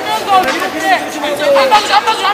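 Several voices calling out over one another, with the chatter of a crowd behind them. The sound echoes as in a large hall.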